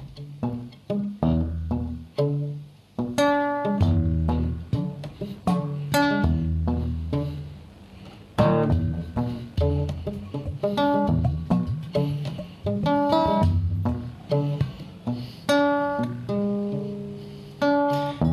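Acoustic guitar fingerpicked: a run of separate plucked notes, each ringing and fading, playing the song's instrumental introduction.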